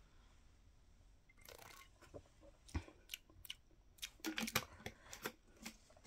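Faint mouth sounds of someone taking a sip of a drink to taste it: small clicks, smacks and swallowing spread over the last four seconds or so.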